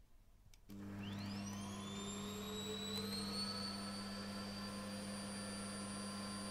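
Vacuum cleaner switched on with a click about a second in, its motor spinning up with a rising whine that levels off into a steady hum and high-pitched whine.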